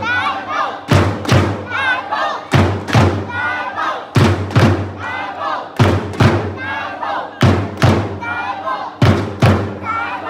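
A group of football supporters chanting "Tai Po" in unison to a drum. The drum is struck twice in quick succession about every one and a half seconds, with the chant filling the gaps between the beats.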